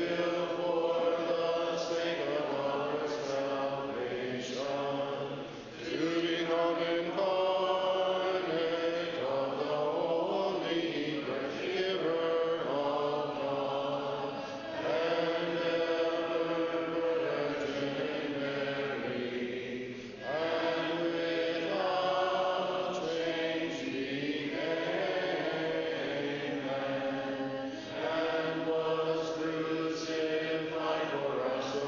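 Several voices singing unaccompanied Orthodox liturgical chant in long held phrases, with short breaks about six seconds in, near twenty seconds and near the end.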